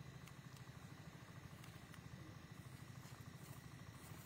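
Near silence: a faint, steady low hum with a fast flutter in it, and a few faint ticks.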